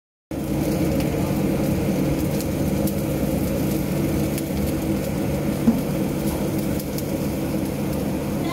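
Handheld butane blowtorch flame burning steadily with a rushing hiss and low rumble as it sears the skin of a raw chicken. It starts just after the beginning, and there is one short pop a little past the middle.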